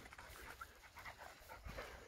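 A working sheepdog panting faintly and rapidly, out of breath after running back from working the sheep.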